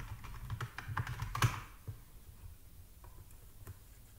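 Typing on a computer keyboard: a quick run of key clicks, ending with a louder click about a second and a half in. After that, only a few faint single clicks.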